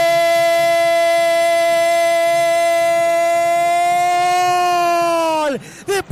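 A male radio football commentator's drawn-out goal cry, one long high-pitched "gooool" held at a nearly steady pitch for several seconds, sliding down and breaking off near the end.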